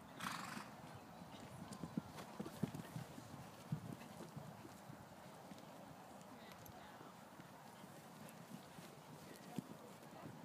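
A horse's hooves cantering on a sand arena surface, a run of muffled low thuds over the first four seconds that then fades away. A short sharp higher sound comes just at the start.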